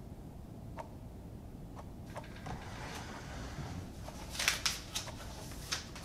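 A clock ticking about once a second, then paper rustling and crinkling as loose sheets are gathered up, with a cluster of sharp crackles past the middle and another near the end.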